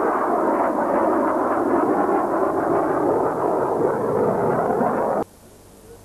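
Loud, steady jet engine noise from a delta-wing jet fighter flying past in an air display, cut off suddenly about five seconds in.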